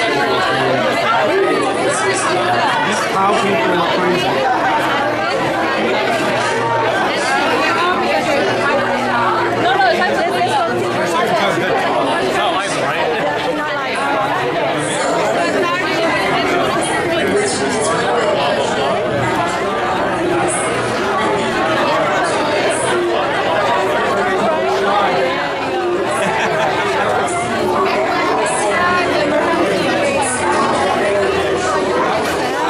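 Crowd chatter: many people talking at once in a large room, a steady, loud babble of overlapping voices with no single voice standing out.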